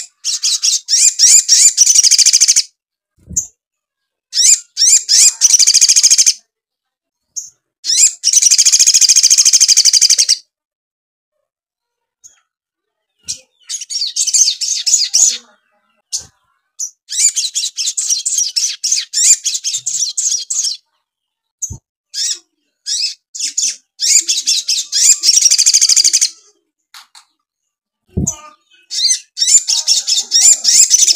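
Caged male olive-backed sunbird (sogon) singing in about seven bouts of rapid, high-pitched chattering chirps, each a couple of seconds long with short gaps between. Its song is filled with mimicked chatter of fighting house sparrows.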